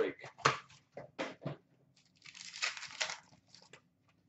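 A few sharp handling clicks, then about a second of crinkling and tearing as a hockey card pack's wrapper is ripped open.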